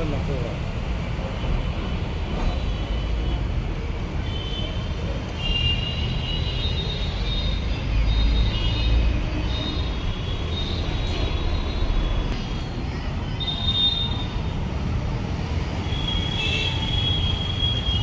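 Outdoor urban ambience: a steady low rumble of traffic with intermittent thin high squeals, one held longer near the end.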